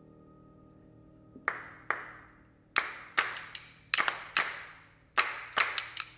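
A grand piano's held chord fades out, and about a second and a half in, a group of singers starts clapping hands in a syncopated rhythm with an echoing tail on each clap, the claps often falling in pairs.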